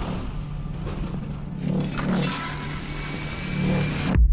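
Horror-trailer sound design: a steady low drone under a dense noisy swell that builds from about halfway and cuts off suddenly at the end.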